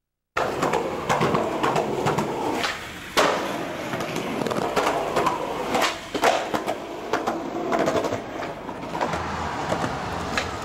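Skateboard wheels rolling on concrete, with sharp clacks of the board popping and landing several times. The sound cuts in suddenly just after the start.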